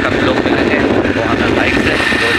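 Wind buffeting the microphone on a moving motorcycle, a dense steady rumble mixed with the bike's running noise.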